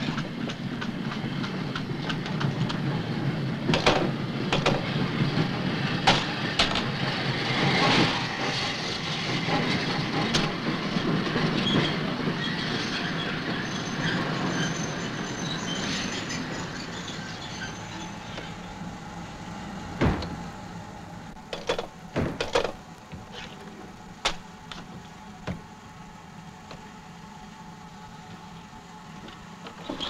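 A train running through the railway station, a steady rumble with clanking that fades away after about eighteen seconds. After it, a few scattered sharp knocks.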